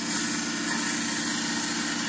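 Wood lathe running steadily while a parting tool cuts into the spinning blank, its bevel riding on the freshly cut surface. The cut throws off shavings over the lathe's even motor hum.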